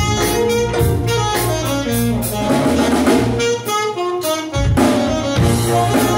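Live big band playing a funky jazz arrangement, with a saxophone solo over drums and bass. The bass and drums drop out for about a second after three and a half seconds, then the full band with brass comes back in.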